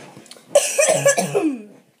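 A person coughing: one loud burst of coughing lasting about a second, starting about half a second in.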